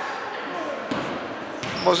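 A basketball bounced twice on a wooden sports-hall floor, about three-quarters of a second apart, as the free throw is set up.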